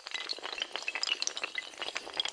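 Sound effect of a long chain of dominoes toppling: a dense, fast run of hard clicks and clinks with a glassy ring.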